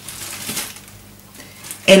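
Disposable plastic shower cap crinkling as it is pulled off the head, loudest about half a second in and fading out over the first second.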